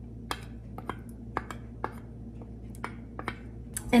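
Light, irregular clicks and taps of metal utensils against a stainless steel saucepan and glass bowl, about two a second, over a low steady hum.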